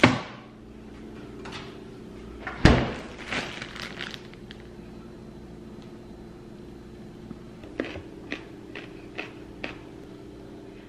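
Kitchen handling sounds of a snack being fixed: a knock at the start as the refrigerator door is worked, a louder knock about two and a half seconds in followed by a few small taps, then a run of light clicks near the end, all over a steady low hum.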